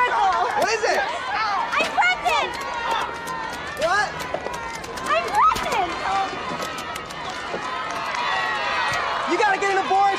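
Several voices calling out and chattering over one another, with no clear words; some calls swoop sharply upward.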